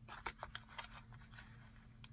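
Faint crinkles and clicks of a clear plastic packaging sleeve being handled as a card of fabric flowers is worked out of it. A few short crackles come in the first half-second, then it goes near quiet under a faint steady hum.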